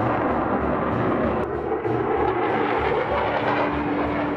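F-16 fighter jet flying overhead, its engine a loud, steady rush of jet noise. A low, regular drumbeat of background music pulses underneath, about two to three beats a second.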